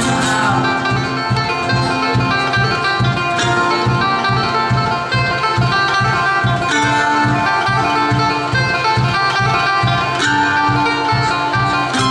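Live bluegrass band playing an instrumental break with no singing: banjo, mandolin and acoustic guitar picking over upright bass with a steady beat.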